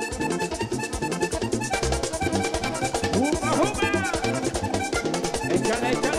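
Live vallenato band playing an instrumental passage: a button accordion leads over electric bass, a metal guacharaca scraper and hand percussion, with a steady beat.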